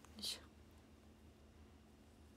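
A woman's voice trailing off in one brief, breathy, whispered syllable just after the start, then near silence with a faint steady hum.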